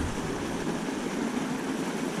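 Steady splashing and rushing of a pond's fountain aerator spraying water, an even hiss with no distinct strikes.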